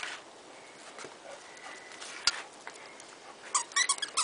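A miniature dachshund worrying a plush stuffed toy in its mouth, mostly faint, with one sharp click about two seconds in. Near the end comes a quick run of short, high squeaks.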